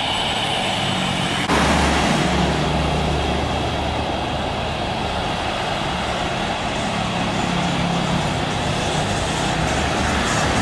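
Jet engine noise from an Etihad Boeing 777-300ER's GE90 turbofans on final approach: a steady deep rumble with a low hum. It starts suddenly about a second and a half in, replacing a lighter stretch of jet noise.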